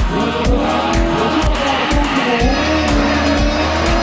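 Music with a steady beat of about two kicks a second, laid over a drift car's engine revving up and down as it slides, with tyres squealing.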